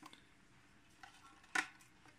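Faint handling sounds of a metal-cased computer power supply being picked up and held: a light tick about a second in, then a short rustle.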